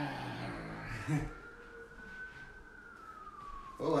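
Police siren wailing faintly in the distance, one slow rise and fall in pitch, with a brief voice sound about a second in.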